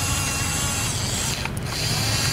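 Remote-controlled toy bulldozer's small electric drive motors and plastic gearboxes whirring steadily as it pushes soil with its blade, with a brief break in the whine about one and a half seconds in.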